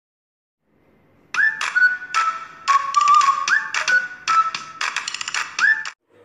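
Intro jingle for a channel logo animation. It is a run of sharp percussive hits with whistle-like notes stepping down in pitch, some sliding up as they begin. It starts about a second in and cuts off suddenly near the end.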